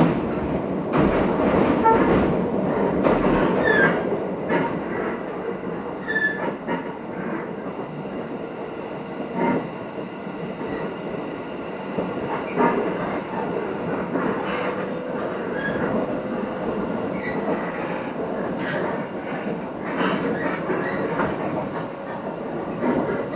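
Cabin of a Shinetsu Line electric commuter train running at speed: a steady rumble with irregular clicks from the wheels over rail joints. It is louder in the first few seconds, and a faint steady whine joins about a third of the way in.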